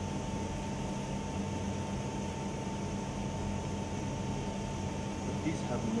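A 16-inch coloured stick sparkler burning with a steady fizzing hiss, with a steady tone held underneath.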